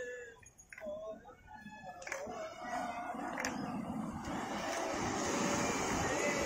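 A crowd's voices, with held, wavering voice-like pitches over a general hubbub, quieter for the first second or so. Two sharp clicks cut through, about two seconds in and again about a second later.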